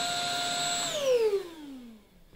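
Rowenta X-Force 11.60 cordless stick vacuum running with a steady motor whine. About a second in the motor stops, and the whine falls steadily in pitch and fades as the motor spins down.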